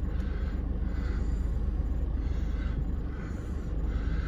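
Steady low engine rumble heard from inside a vehicle's cabin.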